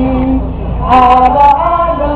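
A group of men and women singing together in long held notes, with a steady low electrical hum underneath.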